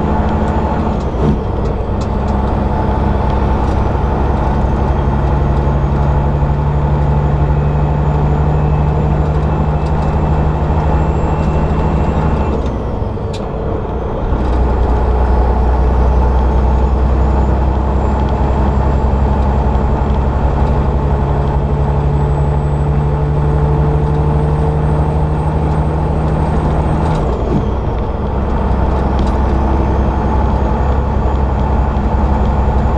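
Diesel engine of a semi-truck running under load as heard inside the cab, with a high turbo whistle that slowly climbs. Twice, about 13 seconds in and again about 27 seconds in, the sound eases, the whistle falls away and the engine comes back on a lower note, as at a gear change.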